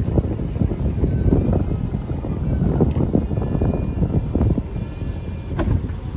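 Steady low rumble of the Mercedes GL450's V8 idling, heard at the rear of the truck near the tailpipes.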